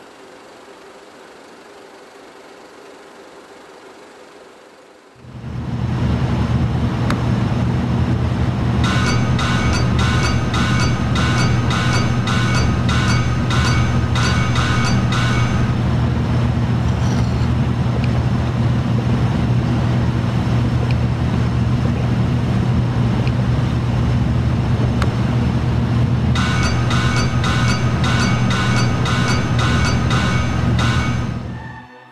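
Hammers striking metal on an anvil with a ringing clang, about two or three blows a second, in two runs: one from about nine to fifteen seconds in, the other near the end. They sound over a loud steady low rumble that comes in about five seconds in; before it there is only a faint steady noise.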